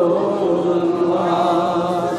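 A man's voice chanting one long held note, steady in pitch, in the melodic recitation style of a waz sermon.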